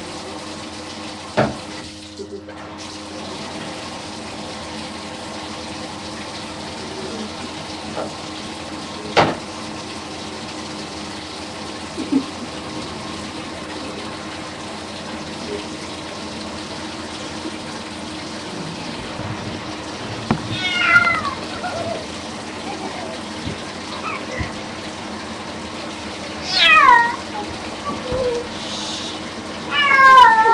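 Water running steadily from a bathtub tap, with a few sharp knocks in the first half. In the last ten seconds a cat being bathed meows several times, the later meows louder.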